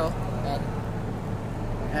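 Steady low mechanical hum of workshop background noise, with a brief faint voice about half a second in.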